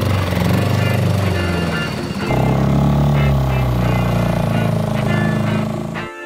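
Small Suzuki outboard motor on an inflatable dinghy running under way, a steady low engine drone whose note shifts about two seconds in.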